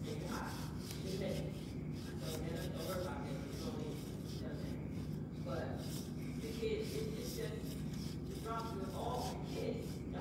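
A woman speaking into a handheld microphone, indistinct at a distance, over a steady low hum.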